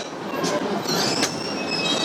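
High-pitched metallic squealing over a rumbling background, starting about half a second in and going on in several thin, wavering tones.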